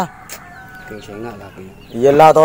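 A chicken clucking in the background during a lull, with a short faint voice about a second in.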